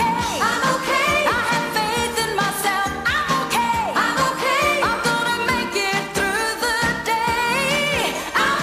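Pop song with a woman singing lead over a keyboard-driven band accompaniment.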